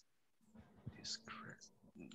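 Near silence, with a faint, low voice murmuring briefly in the middle.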